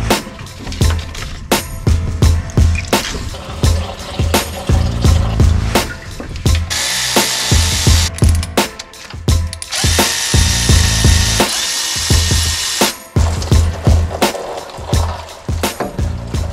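Cordless electric ratchet running in two bursts, about seven seconds in and again from about ten to thirteen seconds, to undo the water pump bolts on a 5.3 LS engine. Background music with a steady beat plays throughout.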